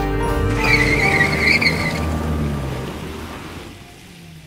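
Sound effect of a van pulling away with a brief tyre squeal, over background music that fades out.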